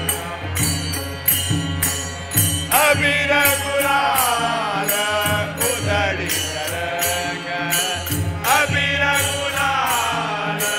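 Hindu devotional bhajan: men singing together to a steady tabla beat, the singing swelling about three seconds in and again near the end.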